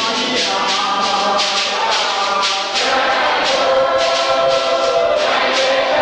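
A group of voices singing a church song together in long held notes, with shaken hand percussion keeping a steady beat of about two to three strokes a second.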